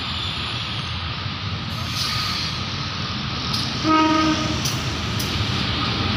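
A CC 203 diesel-electric locomotive runs steadily as it approaches and passes close by. About four seconds in it gives a short horn toot, with a few clicks from the wheels on the rails around it.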